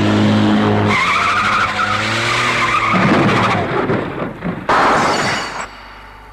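Car engine running hard with tyres screeching for the first few seconds, then a crash with smashing windscreen glass about five seconds in.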